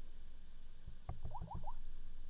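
A rapid run of about five soft fingertip taps on a smartphone's touchscreen about a second in, each with a short rising squeak, over quiet room tone.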